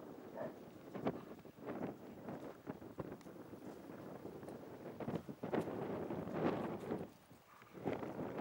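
Gusty wind buffeting the microphone, rising and falling in irregular surges, with a brief lull near the end.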